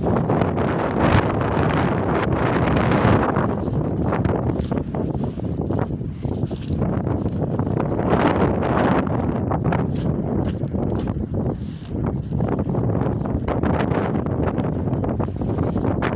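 Wind buffeting the microphone in a steady rumble, over the rustle and swish of long dry grass being pushed through on foot.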